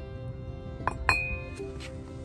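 Glazed ceramic pots clinking against each other twice in quick succession about a second in, the second knock ringing briefly. Background music plays throughout.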